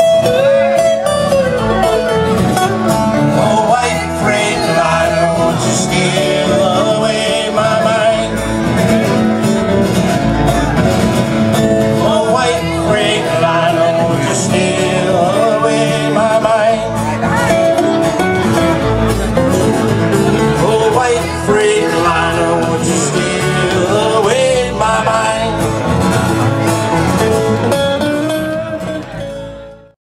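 Live country band music: acoustic guitar and electric bass playing an instrumental passage, fading out near the end.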